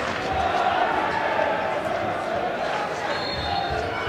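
Football crowd noise with away fans singing, and a thin high whistle note about three seconds in, the referee's final whistle starting.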